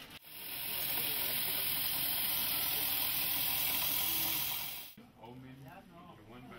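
Small electric coffee sample huller running as beans feed through it from the hopper: a loud, even rushing hiss that starts just after the beginning and cuts off suddenly near five seconds. It is husking a farmer's sample at the purchasing point so the beans can be graded for quality.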